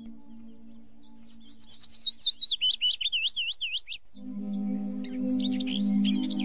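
Bird song: a rapid string of high, swooping whistled notes from about a second in to four seconds, resuming near the end. Underneath is soft ambient music: a sustained chord fades out and a new chord swells in a little after the middle.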